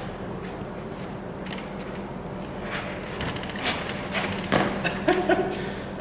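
Scattered light knocks, clicks and footsteps of a person moving about inside a camper trailer and stepping down out of it, over a steady low hum.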